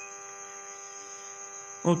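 A steady electrical hum with many evenly spaced overtones, with a faint high whine above it; a man's voice comes in at the very end.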